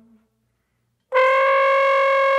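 A trombone note dies away, then after about a second of silence the trombone comes in with one loud, long held high note.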